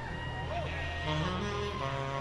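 Live soul band playing, with a tenor saxophone on stage and a bass line that starts moving in steps about a second in.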